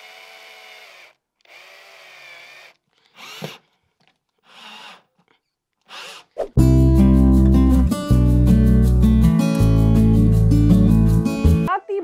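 Cordless drill driving screws into the wall in several short runs, the first two about a second each and the later ones shorter. From about six and a half seconds in, loud music with a strong bass takes over until near the end.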